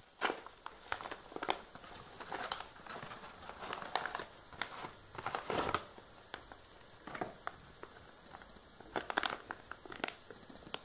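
A paper mailing envelope being torn open and handled, crinkling and rustling in irregular bursts, with a last flurry of crinkling about a second before the end.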